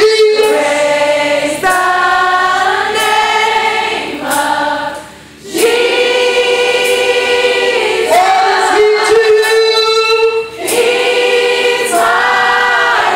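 Congregation singing gospel praise together in long held notes, with a short break about five seconds in and another near ten seconds.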